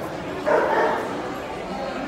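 A dog barking briefly about half a second in, over the background chatter of a crowd.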